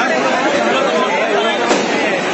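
Crowd of many people talking and calling out at once, a dense, steady chatter of voices, with one short click about 1.7 seconds in.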